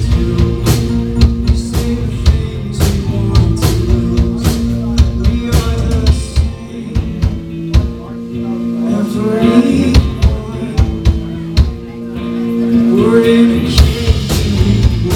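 Indie rock band playing live: drum kit, electric guitar and bass guitar, with drum hits throughout. The music eases back briefly around the middle and again near the end before building up.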